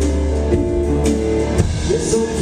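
Live band music without vocals: a nylon-string acoustic guitar strummed over a steady low bass, with a few sharp percussive hits.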